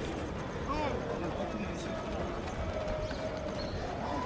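Indistinct voices calling across an open stadium, over the footfalls of a group of players jogging on a synthetic running track.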